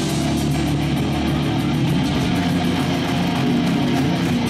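Metalcore band playing live: electric guitars and bass loud and steady.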